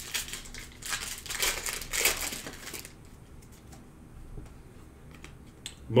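Foil wrapper of a Panini Prizm trading-card pack crinkling as it is handled and torn open, in a run of crackling bursts over about two seconds. A few faint clicks follow as the cards are handled.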